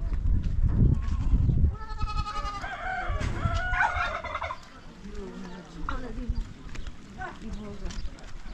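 A domestic fowl calling: one warbling, rattling call of about two and a half seconds, starting about two seconds in. Low rumbling noise comes before it.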